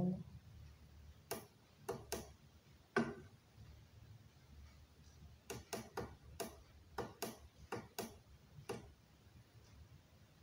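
Sharp clicks of the inverter controller's push buttons, pressed one at a time while stepping through its LCD settings menu. A few scattered presses come first, then after a short pause a quicker run of about ten. A faint low hum runs underneath.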